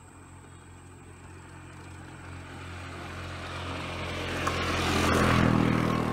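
A motor vehicle's engine grows steadily louder as it approaches, passing closest near the end with a rush of road noise.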